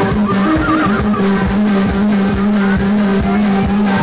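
Live cumbia band playing with a steady beat and a held bass note. A warbling high line sounds about a second in, and a rising glide starts near the end.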